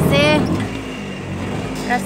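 Auto-rickshaw engine and road noise heard from inside its open cabin while riding. A voice is heard in the first half-second and again just at the end.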